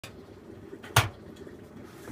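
A single sharp plastic knock about a second in, from the controls of a Zanussi EW800 washing machine being set for a wash.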